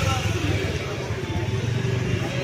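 Street ambience: a steady low rumble of vehicle engines from traffic, with people's voices chattering in the background.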